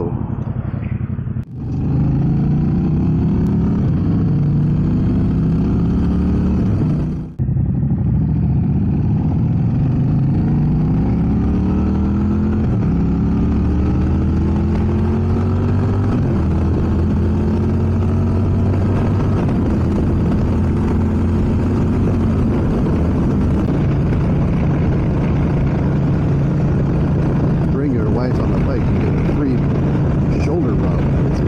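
Motorcycle engine accelerating away, its pitch rising and dropping back with each upshift several times, then holding a steady cruise. Twice in the first several seconds the sound drops out briefly.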